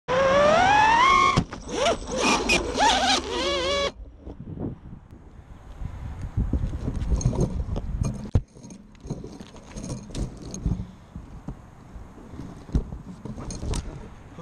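Racing quadcopter's brushless motors and propellers whining in a rising pitch, then wavering up and down with the throttle, cutting off abruptly about four seconds in as the quad ends up in a pine tree. After that, a lower bed of wind and rustling with scattered knocks.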